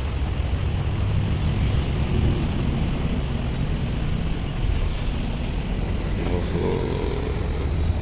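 Steady low rumble of engines idling in a line of stopped buses and vans held up in a traffic jam.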